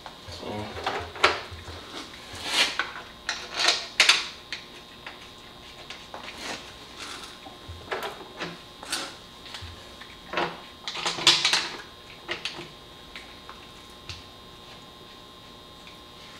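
Irregular clicks, clinks and scrapes of hand tools and metal parts against an intake manifold as the Torx bolts of a new oil separator housing are fitted, sparser near the end.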